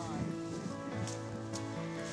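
Soft background music with sustained notes, quiet between stretches of talk.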